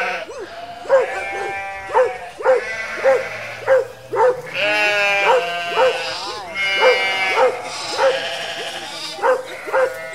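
Sheep bleating over and over, long wavering calls of about a second each, while a dog barks steadily in short, evenly spaced barks.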